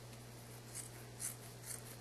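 Scissors cutting through a cotton t-shirt sleeve: a series of faint, soft snips, roughly two a second.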